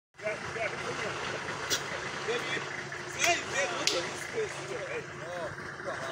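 Several voices talking and calling at once, overlapping, over a steady low background hum, with a few sharp clicks or snaps.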